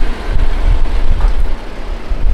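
Loud, uneven low rumble of a pickup truck pulling slowly forward with an Airstream travel trailer hitched behind.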